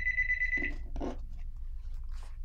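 A steady, high-pitched ringing tone with a slight warble, like a phone or alarm, cutting off a little under a second in, over a low steady hum.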